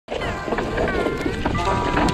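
Specialized Levo electric mountain bike running down a dirt trail: rumble of tyres and wind on the camera, with rattling clicks and knocks, and a whine that shifts and slides down in pitch.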